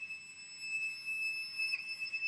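A 2010 Anthony Lane violin holding one very high, thin note, steady and sustained, with a slight wobble in pitch near the end.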